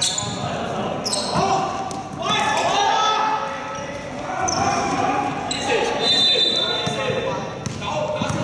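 Basketball bouncing on a sports-hall court floor, with players' voices calling out over it, all ringing in a reverberant hall.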